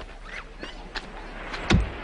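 A beach umbrella pole driven down into sand: one heavy thud near the end, with a few light knocks before it.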